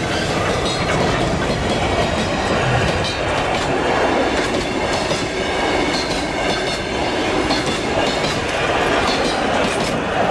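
Heritage steam excursion train running along the track: a steady, loud rolling noise with frequent irregular clicks from the wheels on the rails.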